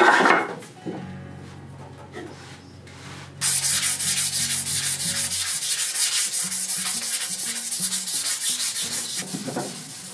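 Hand sanding the edge of a wood-and-resin tabletop with an abrasive pad: quick back-and-forth strokes, several a second, starting a few seconds in and running on steadily.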